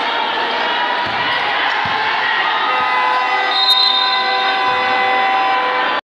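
Basketball game in a gymnasium: steady crowd din with a few thuds of a basketball bouncing on the court. About halfway through, a steady held tone at several pitches joins in and lasts to the end.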